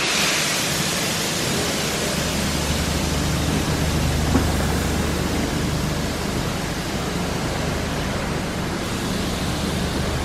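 Steady rushing noise with a low hum underneath, and a single short tick about four seconds in.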